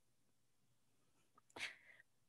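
Near silence, broken near the end by one short, hissy intake of breath.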